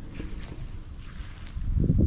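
An insect calling in a steady, high-pitched pulsing trill, about eight pulses a second, over a low rumble on the microphone.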